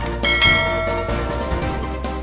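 Background music with a bright bell chime sound effect about a quarter of a second in, ringing out over about a second, as a notification bell icon is clicked.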